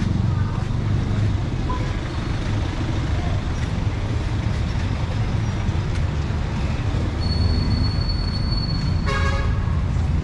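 Steady rumble of street traffic, with a thin high whine for a couple of seconds near the end followed by one short vehicle horn toot about nine seconds in.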